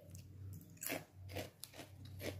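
A few faint crunches of Parle Wafers potato chips being eaten, starting just under a second in.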